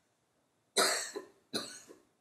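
A person coughing, a short run of coughs starting just under a second in, the first the loudest, in a quiet room.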